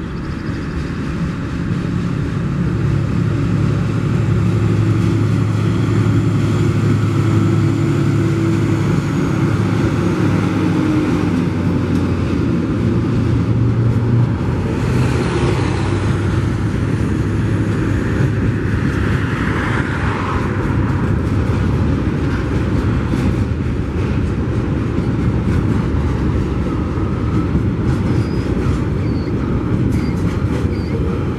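Two Tasrail TR class diesel-electric locomotives pass close by with a steady low engine drone. About halfway through, the drone gives way to loaded log wagons rolling past: a continuous rumble of steel wheels on rail, with a brief higher hiss soon after the change.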